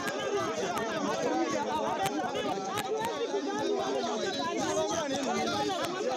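A crowd of people talking over one another in a heated argument, many voices at once with no single voice standing out.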